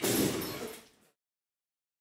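A single sudden hit, a brief faint swell leading into a loud impact that dies away within about a second, timed to the title appearing: an edited transition sound effect.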